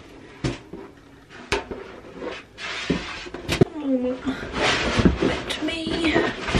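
Sheet vinyl flooring being handled and laid over underlay: a few sharp knocks in the first half, then a longer rustling, scraping sound as the sheet flexes and slides.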